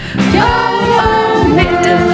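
Music: a group of voices singing long held notes over a band with a steady beat.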